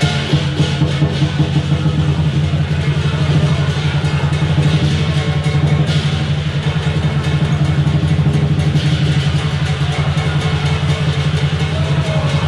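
Southern Chinese lion dance percussion: the lion drum beaten in a fast, steady rhythm with cymbals and gong clashing along, playing without a break.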